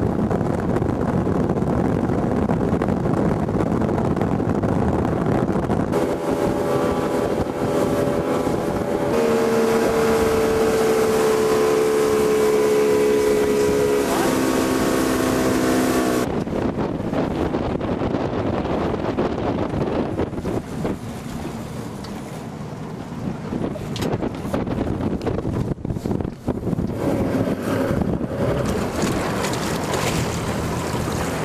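Motorboat under way: its engine runs steadily at speed, with a steady hum that steps down in pitch a little past the middle. After an abrupt change, wind buffets the microphone over the rush of water from the wake.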